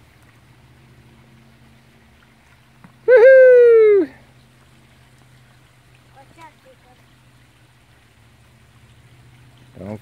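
A high voice gives one wordless, falling cry about a second long, a few seconds in, over a faint steady trickle of a shallow creek.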